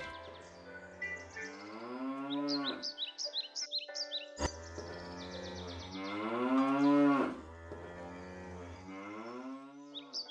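A cow mooing twice, two long calls that each rise and then fall in pitch, over quiet background music.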